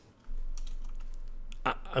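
Light clicking of a computer keyboard being typed on, over a steady low hum that sets in just after the start; a man's voice comes back near the end.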